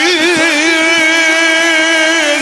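A male singer holding one long sung note of a devotional anthem into a microphone, wavering at first and then held steady.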